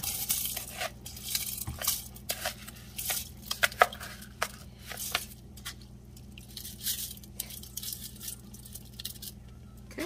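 Basmati rice being poured from a plastic measuring cup into a steel pot of liquid: irregular clicks and clinks of grains and the cup against the pot, thickest in the first half and thinning out later.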